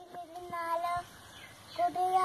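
A young boy singing unaccompanied. He holds a steady note through the first second, pauses briefly, and starts the next phrase near the end.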